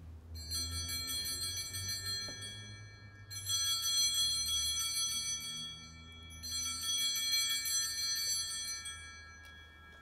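Altar bell struck three times, about three seconds apart, each ring sustaining and slowly fading. It is the bell rung as the priest elevates the consecrated host.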